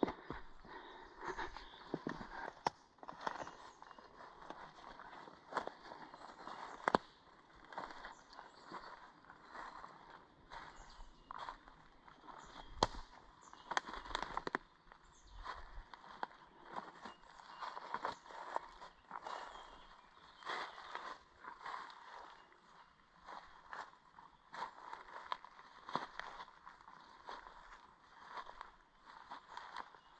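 Footsteps of a person walking through forest undergrowth, crunching leaf litter and brushing low plants with many irregular soft steps and rustles.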